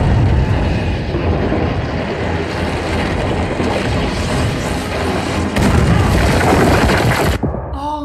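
Explosion on a TV episode's soundtrack: a long, rumbling blast with a second surge about five and a half seconds in, cutting off sharply near the end.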